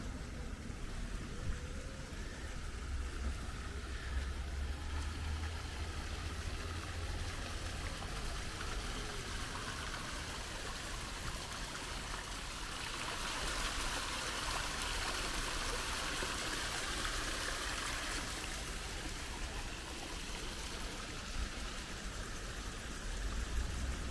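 Water splashing down a small cascade over rocks into a stream, a steady rush that grows louder for several seconds in the middle, over a low rumble.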